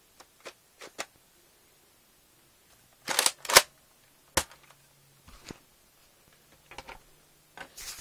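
Handling noise: a series of sharp clicks and knocks as objects are moved and fitted together. A few light ticks come first, then the loudest cluster about three seconds in and a single sharp click a second later, with weaker clicks near the end.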